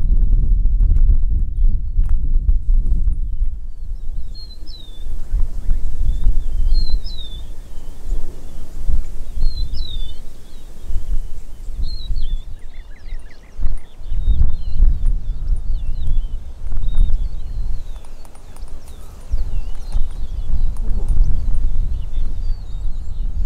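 Wind buffeting the microphone in gusts, with birds repeating short high chirps from a few seconds in, more often in the second half. A few faint clicks sound at the start.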